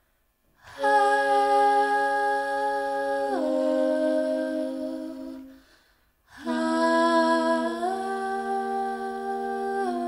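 Big band ensemble holding soft sustained chords that move in steps. The first chord enters under a second in and fades out about five seconds later; after a brief silence a new chord enters and shifts twice.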